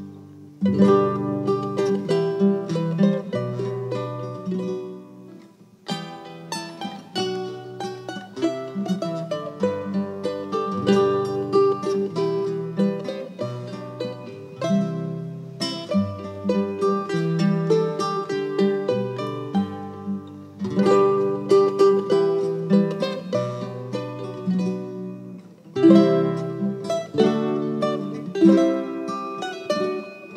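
Irish folk music led by plucked strings, mandolin-like, playing in phrases about ten seconds long, each ending in a brief dip.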